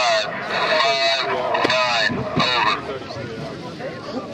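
Indistinct speech, mostly in the first three seconds, then quieter.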